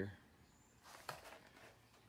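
Near silence: room tone, with a faint brief rustle and soft click about a second in.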